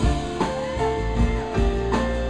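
Live band playing an instrumental passage: grand piano, electric bass and guitars holding sustained notes over a drum kit, with a few sharp drum hits.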